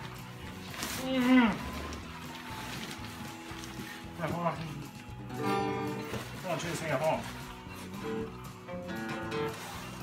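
Acoustic guitar strummed unevenly and out of tune, with short bursts of laughter and voices over it.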